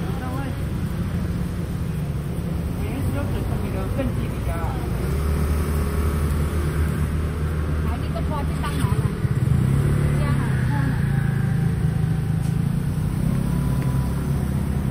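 Street traffic with a vehicle engine running close by, its low hum growing louder in the second half as a car draws near, with people talking in the background.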